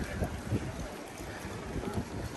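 Wind buffeting the microphone, an uneven low rumble over outdoor street noise.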